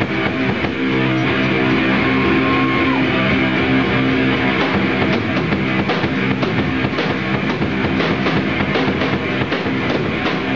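Live rock band playing an instrumental passage: electric guitar and a drum kit, with no singing.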